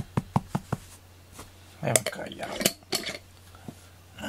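Fingers tapping on a carpeted floor to call a cat: a quick row of sharp clicks, about five a second, then about two seconds in a few rougher scratchy scrapes.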